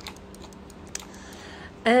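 A few sparse, light keystrokes on a computer keyboard, with a faint steady hum underneath.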